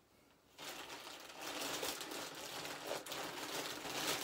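Plastic packaging crinkling and rustling as it is handled, starting about half a second in.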